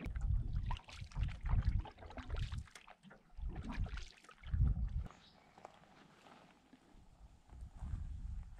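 Canoe paddles pulling through calm water, each stroke about a second apart with splashing and dripping off the blade. The strokes stop about five seconds in and it goes much quieter.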